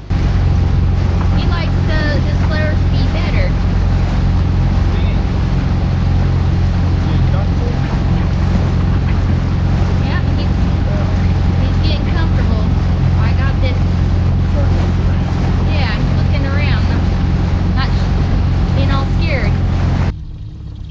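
Mercury outboard motor on an inflatable dinghy running at a steady speed, with wind on the microphone.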